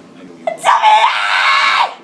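A girl's high-pitched scream, held for about a second and then cut off short, in excited reaction.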